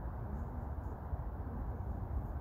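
Low, even rumble of wind on the microphone, with no distinct events standing out.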